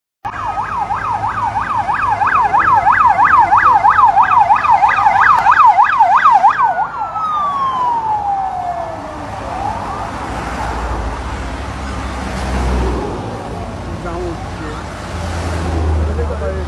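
Vehicle siren in a fast yelp, about four sweeps a second, then winding down in one long falling glide about six and a half seconds in. Vehicles then pass by with engine and tyre noise.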